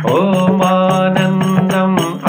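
A man's voice singing a long, ornamented devotional note, with light strokes of a handheld frame drum near the end.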